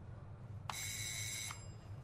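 Electric doorbell ringing once for just under a second: a steady, bright ring that starts and stops with a click, over a low steady hum.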